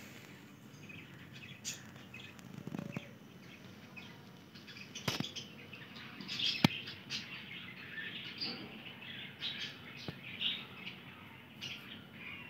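Birds chirping in the early-morning dawn chorus: scattered short, faint chirps, with two sharp clicks around the middle.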